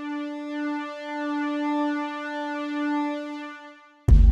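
Background music: a single held synthesizer note with many overtones, swelling gently and fading out near the end, as a synth-pop song closes.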